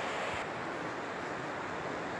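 Steady rush of a shallow, rocky river flowing.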